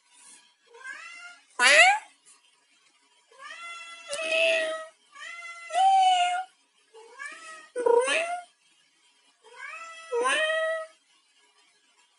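A high, meow-like voice humming a tune in long drawn-out notes, each sliding up at its start, with short gaps between them.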